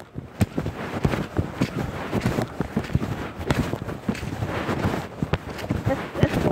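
Handling noise of a phone being carried with its lens covered: rustling and irregular knocks and bumps against the microphone, with some wind on the microphone.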